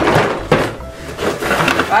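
Cardboard box being handled as its stuck lid is pulled at: cardboard rubbing and scraping, with a sharp knock about half a second in.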